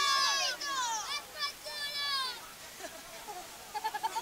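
High-pitched shouting voices at a football match, long strained calls that bend in pitch for the first two seconds or so, then fading to a few fainter calls.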